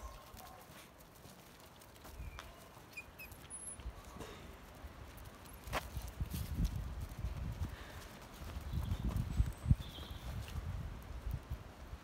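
A cat and dogs scuffling on gravel: paws scrabbling and small pebble clicks, with irregular low thumps that grow louder about halfway through as the bigger dog joins the play.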